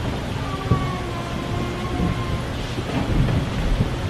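Audience applauding in a large hall, a steady clatter of clapping.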